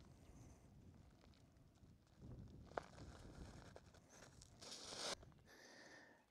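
Near silence: a faint low outdoor rumble, with one small click about three seconds in and a brief soft rustle about a second before the end.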